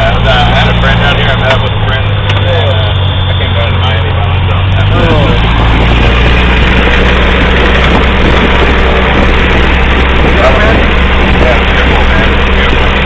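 A small high-wing plane's engine running steadily while taxiing, heard from inside the cabin with the door open. About five seconds in its sound grows fuller and noisier.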